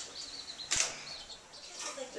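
Baby chicks peeping faintly in short high chirps, with a single sharp click about three-quarters of a second in.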